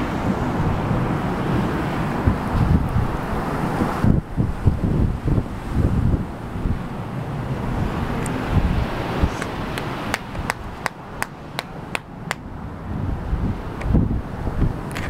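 Wind buffeting the microphone, a gusty low rumble that eases off after the first few seconds. In the last few seconds a run of sharp, irregular clicks sounds over it.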